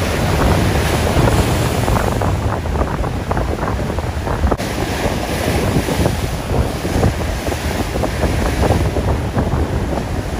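Heavy storm surf breaking and churning, with strong wind gusting across the microphone in a dense, continuous roar.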